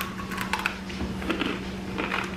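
A bite into a crunchy chocolate-covered chow mein noodle cookie cluster, followed by a few crisp crunches as it is chewed.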